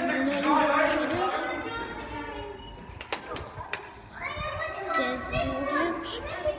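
Children's voices, high-pitched chatter and calls, with a couple of short sharp clicks about three seconds in.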